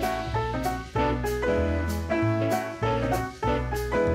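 Instrumental background music with a moving bass line and a steady beat of about one hit every two-thirds of a second.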